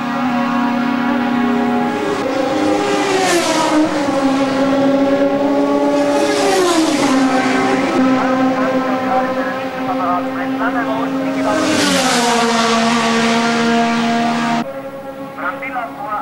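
1975 Formula 1 cars at racing speed, their engines sounding a high, sustained note that drops in pitch as each car passes, about three times, with a burst of hiss from spray on the wet track as they go by. The sound cuts off abruptly near the end.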